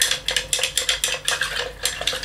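A wooden chopstick stirring in a glass jar, making rapid clicks and scrapes against the glass, several a second. It is dissolving sodium hydroxide into methanol to make methoxide.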